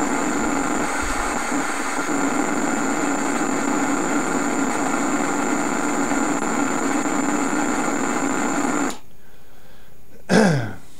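A homemade Tesla coil running with a steady electrical buzz, a strong low hum and a thin high whine over it. It is switched off suddenly about nine seconds in.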